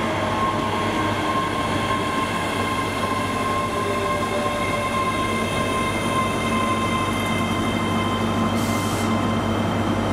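ScotRail electric multiple unit moving through the station at low speed: a steady electric whine with several held high tones over a low hum. A brief hiss comes near the end.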